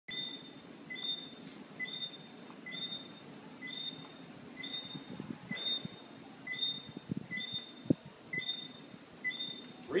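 A bird calling at night: one short, level note with two pitches, repeated steadily about once a second without a break. A few soft knocks of handling noise come near the end.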